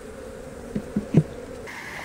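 Honey bees buzzing steadily around an opened hive, with a few short knocks about a second in as frames are pulled from the wooden brood box. A higher-pitched buzz joins near the end.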